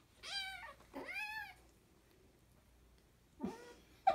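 Kitten mewing in two short, high-pitched cries that rise and fall, one right after the other in the first second and a half, while being pinned by a larger cat in rough play.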